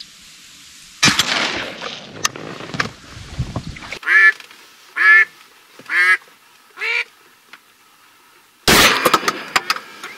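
A shotgun shot about a second in, its report rolling away over the water for a couple of seconds. Then four loud duck quacks about a second apart, each falling in pitch, and near the end another sudden loud blast followed by a quick run of sharp clicks.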